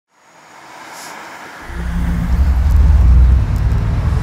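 A motorcycle engine rumbling as it rides up the street, coming in about one and a half seconds in and growing loud, loudest near three seconds, over street traffic noise.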